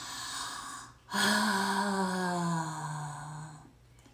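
A woman's breathy intake of breath, then one long, drawn-out wordless vocal sound of admiration that falls slowly in pitch and fades.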